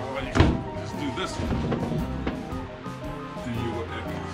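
Background music throughout, with one sharp knock about half a second in from a plywood companionway hatch board being handled in its frame.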